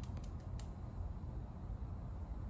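A few light clicks within the first second as a small glass vial and a 1 mL syringe are handled while the dose is drawn up, over a steady low room hum.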